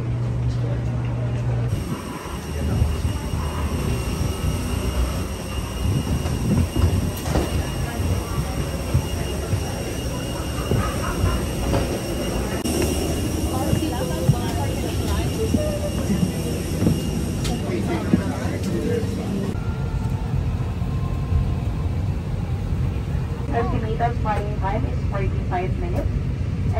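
Airliner boarding ambience: a steady low rumble of aircraft and ventilation noise in the jet bridge and cabin, with a murmur of passengers' voices that grows near the end. It changes abruptly twice, as separate short clips are joined.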